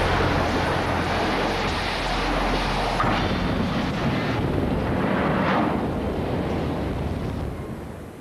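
Dubbed-in train-crash sound effect: a sustained rumbling roar with a deep low end, fading out near the end.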